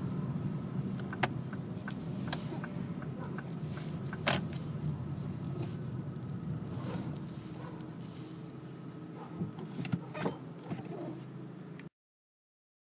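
Car interior running noise: a steady low engine and tyre hum as the car drives slowly and pulls in to the left kerb, with a few scattered clicks and knocks. It fades a little and cuts off suddenly near the end.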